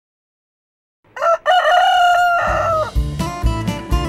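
A rooster crows once about a second in, a short note followed by a long held one. Acoustic guitar music with a steady beat comes in under the end of the crow.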